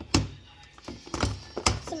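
Plastic lunch box and food containers knocked and set down on a benchtop as they are handled: a loud thunk just after the start, then a few more knocks about a second later.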